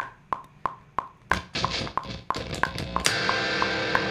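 Metronome clicking about three times a second with drum hits over it, then an electric guitar chord ringing out from about three seconds in while the clicks keep time.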